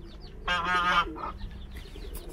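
A domestic goose honking once, a call of about half a second starting about half a second in. Faint high peeps from small young birds are heard around it.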